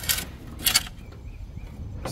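Metal shovel scraping old charcoal ash and clinker across the steel floor of a grill's firebox: two short scrapes half a second apart, the second the louder.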